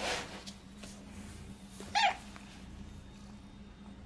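A domestic cat gives one short meow about two seconds in, the loudest sound here. A brief breathy puff of noise comes at the very start, over a faint steady hum.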